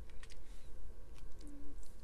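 Small plastic LEGO pieces clicking and tapping as they are handled and fitted together: a few light, separate clicks. A brief low hum sounds about halfway through.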